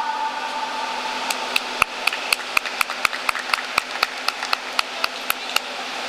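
Scattered applause from a handful of people: separate hand claps at about four a second, starting about a second in as the song's last held note dies away.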